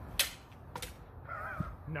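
Two sharp metallic clanks of steel backswords striking, about half a second apart, followed by a brief wavering vocal cry.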